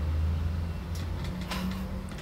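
Low, steady background rumble with a few faint clicks about a second in and again near the end.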